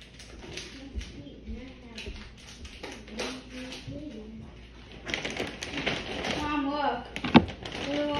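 Muffled, indistinct voice, with handling noise on the phone's microphone that gets louder about five seconds in, and a few sharp clicks near the end.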